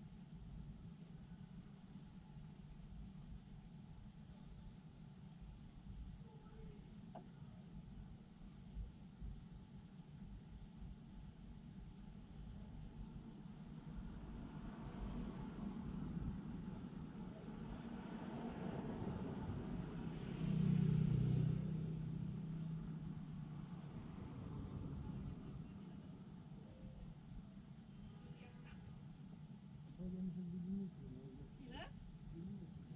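A car driving past close by: the engine and tyre sound swells for several seconds, is loudest about two-thirds of the way through, then fades away over a low steady hum of traffic.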